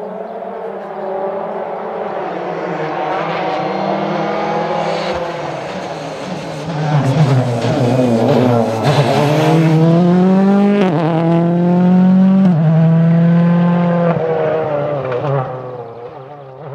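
Ford Fiesta RRC rally car's 1.6-litre turbocharged four-cylinder engine approaching at speed, revs dropping about seven seconds in as it brakes for the corner. It then accelerates hard past with rising revs and quick upshifts, and fades as it pulls away.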